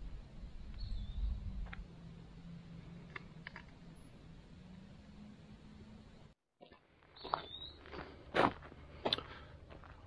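Hiker's footsteps and the sharp taps of trekking poles on rocky ground, faint and irregular, with a low rumble in the first couple of seconds. The sound drops out for about half a second a little past halfway, then a few louder taps follow.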